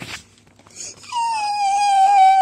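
A child's high-pitched wail starting about a second in: one long held note that dips slightly at the start and then holds steady.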